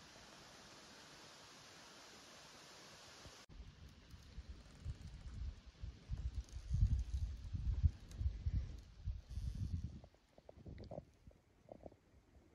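A steady hiss that cuts off about three and a half seconds in, then irregular low gusts of wind buffeting the microphone, with a few light clicks near the end.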